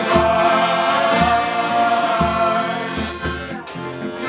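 Male shanty choir singing a sea shanty with accordion accompaniment, held notes over a low bass beat about once a second. The singing dips briefly near the end.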